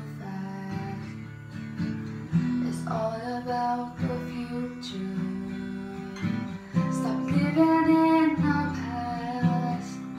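A woman singing to her own strummed acoustic guitar in the lively echo of a small toilet room, her voice loudest about seven seconds in.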